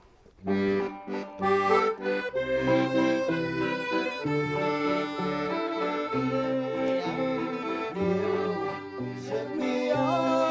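An accordion plays chords over bass notes as a small folk band with banjo and fiddle strikes up a tune, starting about half a second in after a brief pause.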